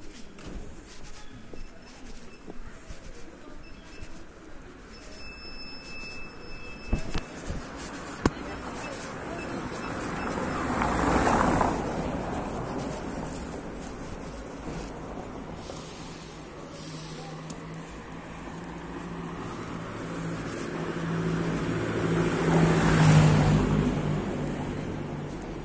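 Urban street ambience with motor vehicles: a vehicle passes, swelling and fading about halfway through, then an engine hum builds and grows loud near the end as another vehicle comes close.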